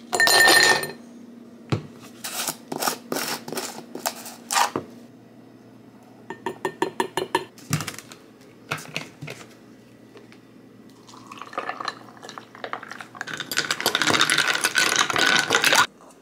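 A glass tumbler set down on a stone countertop with a ringing clink, then ice cubes dropped into the glass in a string of sharp clinks and a quick rattle. Near the end, juice poured into the glass, a steady rush that stops sharply.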